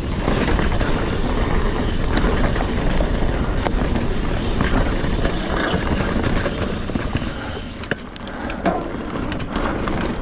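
Trail noise from a Trek Fuel EX 7 mountain bike ridden on dirt singletrack: Maxxis Minion tyres rolling over dirt and rocks, the bike rattling over bumps, and wind buffeting the camera microphone. About eight seconds in it quietens a little, with a run of sharp clicks.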